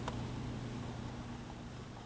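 Workshop room tone: a steady low hum with a faint hiss, one small click right at the start, slowly fading down.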